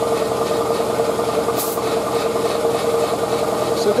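Shop air compressor running steadily, a constant mechanical hum at one pitch. A brief hiss about one and a half seconds in.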